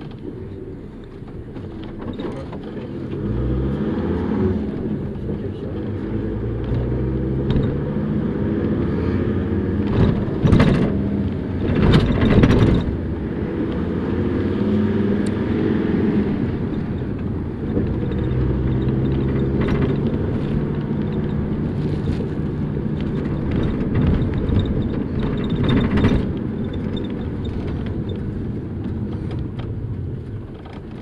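Bus engine heard from inside the cabin, pulling away and climbing in pitch as it picks up speed, with a drop and a second climb partway through as it changes gear. A few loud clatters of the bus body about ten to thirteen seconds in.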